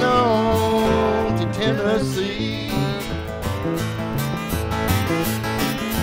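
Live blues on two guitars: a resonator guitar played flat on the lap and a hollow-body electric guitar, over a repeating bass pattern. Near the start a note bends and slides before the guitars carry on.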